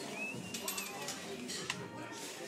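Indistinct background voices with some music underneath, a wavering high tone for about a second, and a sharp click near the end.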